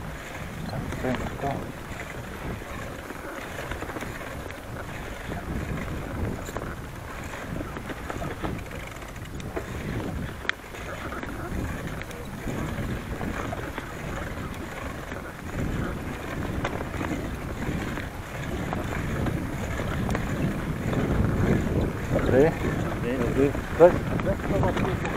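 Wind buffeting a handlebar-mounted camera's microphone, with the low rumble of a bicycle rolling over a bumpy grass track; a single sharp click about halfway through.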